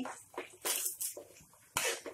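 Metal spoon scraping across a frying pan while stirring four eggs frying in hot oil: a few short, separate scrapes, the loudest near the end.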